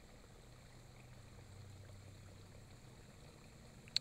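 Faint, steady trickle of water from a small rock waterfall fountain, with a faint low hum underneath for most of it.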